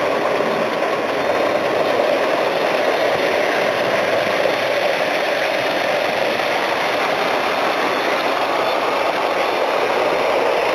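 S scale model Union Pacific 4-8-4 Northern steam locomotive with centipede tender running along the layout track: a steady whir of the motor and the noise of the wheels on the metal rails.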